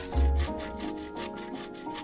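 Hand saw cutting through a wooden branch with rapid rasping strokes, over background music with steady notes and bass.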